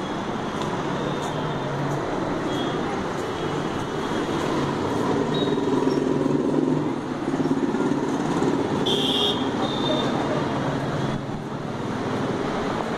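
Steady road traffic noise, engines of passing vehicles running, with a short high-pitched horn toot about nine seconds in.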